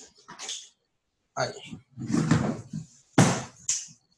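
Short bursts of voices and household noise coming through a video call, each cutting off abruptly into silence, about five in a few seconds.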